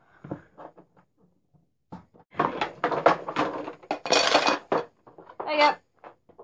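Pens clattering and rattling as they are put into a hard plastic case: a few light clicks at first, then a dense rattle for a couple of seconds.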